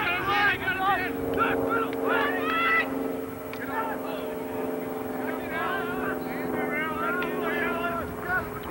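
Several voices shouting and calling out across the field during a lacrosse game, with a steady low hum underneath.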